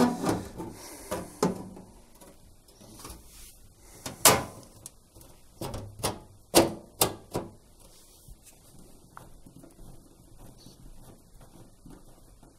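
The back panel of a Bosch washing machine being fitted onto the cabinet: a string of knocks and clacks as it is set and pressed into place. The loudest comes about four seconds in, several more follow between six and seven seconds in, and then only light handling sounds remain.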